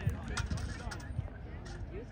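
Indistinct chatter of several people talking, with a few short, sharp clicks in the first second.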